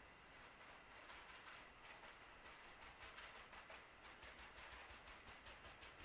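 Faint, quick dabbing of crumpled kitchen paper against a concrete pot, several soft taps a second, coming more often after about two seconds, over near silence.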